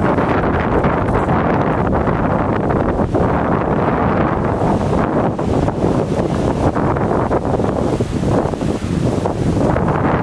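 Wind blowing hard across the microphone: a loud, steady, gusting rumble.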